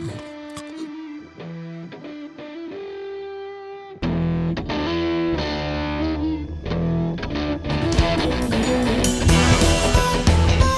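Music with distorted electric guitar, quieter at first and then louder and fuller about four seconds in, with sharp hits joining in near the end.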